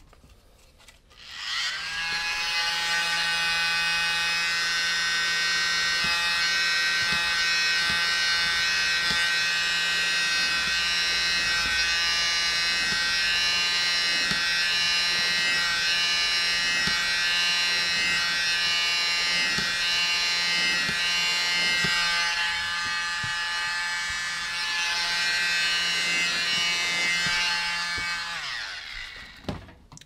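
Handheld electric blower running, pushing wet acrylic paint outward across the disc. Its whine rises as it starts about a second and a half in, holds steady with a faint regular ticking, and falls away as it switches off near the end.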